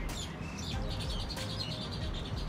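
Small birds chirping, with a quick run of repeated high chirps in the second half, over a steady low rumble.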